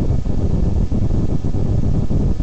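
Steady low rumble with irregular rustling on the camera microphone: handling noise from the camera being held and the card moved close to the lens.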